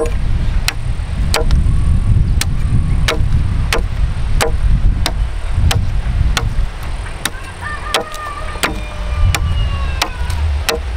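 Machete chopping at an upright wooden pole, sharp knocks of the blade into the wood about one and a half times a second, over a steady low rumble.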